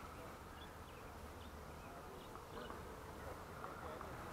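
Faint outdoor ambience: a steady low rumble with a few faint, short high chirps scattered through the first few seconds.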